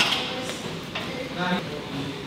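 A boxing glove landing on a heavy punching bag right at the start, the last punch of a combination, then quieter room tone with a short vocal sound about one and a half seconds in.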